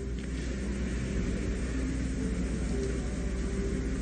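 Steady background noise of an old sermon recording in a pause between sentences: an even hiss with a low hum underneath and no speech.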